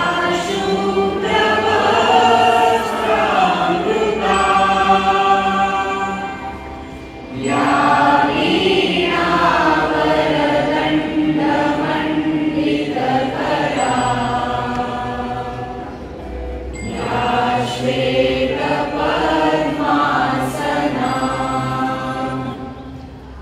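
Many voices singing a prayer together in slow, sustained phrases, pausing briefly twice between verses.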